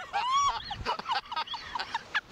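Two riders on a slingshot thrill ride shrieking and laughing in quick bursts, their voices swooping up and down in pitch.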